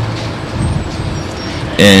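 Steady low rumbling room noise of a lecture hall heard through the talk's microphone during a pause. A man's voice resumes near the end.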